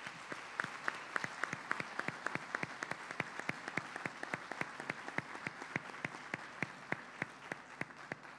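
A small audience applauding, with individual hand claps standing out, dying down near the end.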